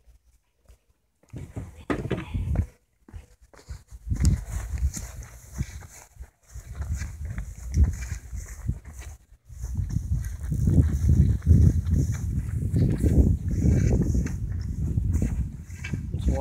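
Rumbling and knocking handling noise, with wind buffeting, on a phone's microphone as it is carried and jostled about. It comes in uneven patches and is heaviest near the end.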